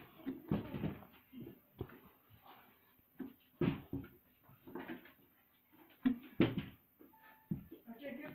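Quiet, indistinct voices in short snatches, with a few soft knocks between them.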